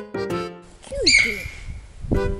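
Sika deer giving a single short, high-pitched whistling call about a second in. The call is heard over faint outdoor hiss after background music breaks off.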